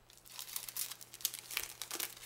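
Paper and its packaging crinkling as they are handled. A rapid, uneven run of crackles starts about half a second in.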